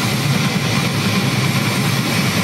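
Death metal band playing live: a dense, unbroken wall of heavily distorted guitar over very rapid low drum strokes.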